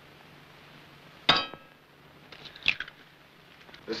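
A single sharp metallic clink with a short ring about a second in, then a fainter click about a second later, over the steady hiss of an old film soundtrack.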